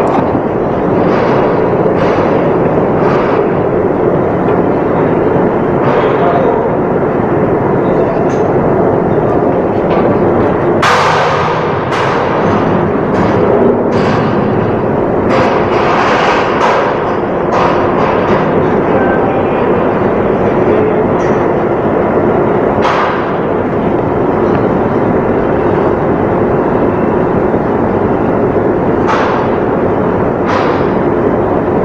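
Loud, steady machinery noise in a ship's pumproom, with a faint constant hum, broken by a scattering of sharp knocks, most of them between about 11 and 18 seconds in.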